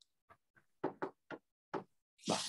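A stylus tapping against the glass of an interactive display while writing: a few short, light knocks in the second half.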